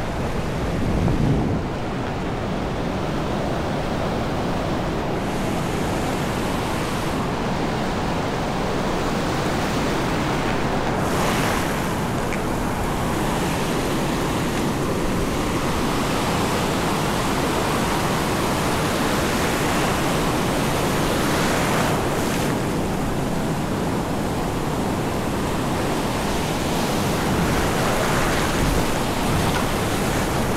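Sea surf breaking and washing around the legs in the shallows, a steady rushing wash with a few louder surges.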